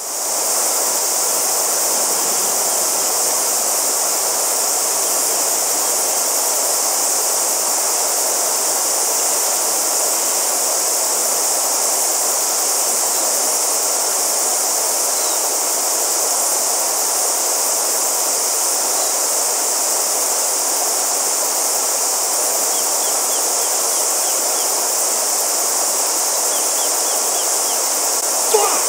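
Shallow river running over stones, with a steady high-pitched hiss over it that does not change.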